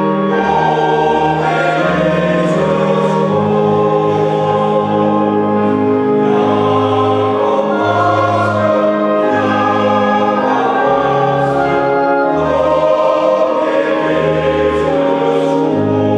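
A male choir singing a hymn in four-part harmony, with organ accompaniment holding sustained bass notes beneath the voices, in a reverberant church.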